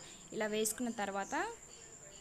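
A steady, high-pitched cricket trill runs throughout, with a voice speaking briefly in the first half. Underneath is the faint sizzle of chicken pakoda frying in hot oil.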